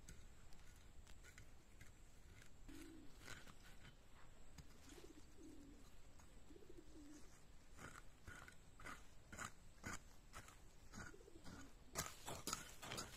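Hand hoe chopping and scraping dry soil: faint scrapes and knocks that come thicker and louder over the last few seconds. A few short, low, wavering bird calls sound faintly behind it.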